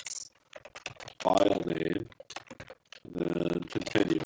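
Typing on a computer keyboard: short runs of key clicks, with a voice speaking briefly between them.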